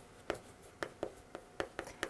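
Chalk writing on a chalkboard: a faint series of about eight short, sharp taps and scratches as characters are written.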